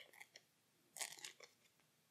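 Near silence with a few faint clicks and rustles of playing cards being handled on a playmat, the loudest a short cluster about a second in.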